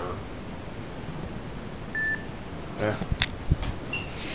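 A single short electronic beep about two seconds in, over quiet room tone, followed by a few soft handling knocks.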